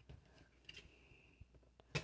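Faint handling sounds of washi tape being pressed down onto a paper planner page by hand, a few soft ticks, then one short sharp click near the end as the tape cutter card is worked against the tape.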